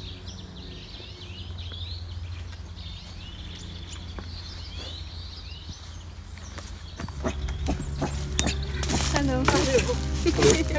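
Small songbirds chirping and twittering in woodland, a run of short rising and falling calls, over a low steady hum. From about seven seconds in, louder voices and knocks take over.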